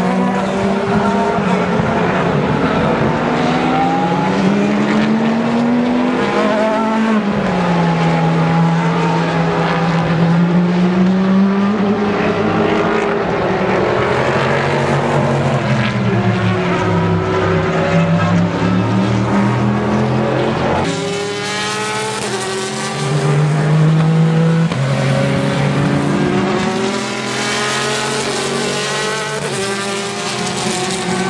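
Sports-prototype and GT race cars running past one after another, their engines rising and falling in pitch as they brake and accelerate. About two-thirds of the way through, the sound changes abruptly to a brighter, louder mix of cars.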